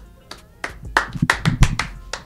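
A run of about seven uneven hand claps over background music.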